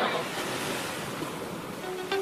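Sea waves with some wind, heard as a steady rushing hiss.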